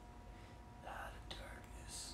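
A man whispering faintly under his breath: a few short, breathy sounds without a spoken voice. A faint steady hum runs underneath.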